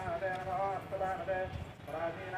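A high-pitched voice singing or chanting in short phrases that rise and fall, with brief gaps between them.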